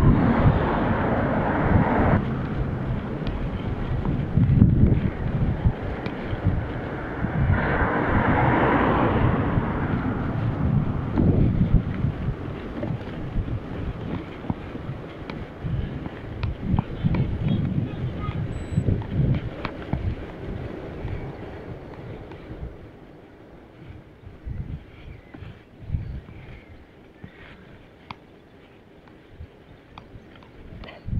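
Wind buffeting the microphone of a handlebar-mounted Akaso Brave 7 action camera on a moving bicycle, mixed with rumbling tyre and road noise. It is loudest in the first third and dies down markedly over the last third as the bike slows.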